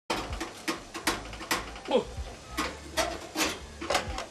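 Repeated sharp knocks and clicks, about two to three a second and unevenly spaced, from a stuck oven door on a gas cooker being banged and forced by hand to get it open.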